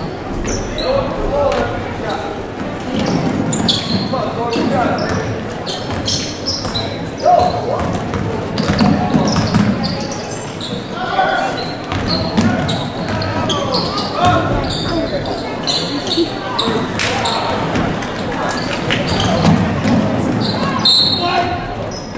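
A basketball game in a gym: the ball bouncing on the hardwood court in repeated sharp knocks, under indistinct shouts and chatter from players and spectators, echoing in the large hall.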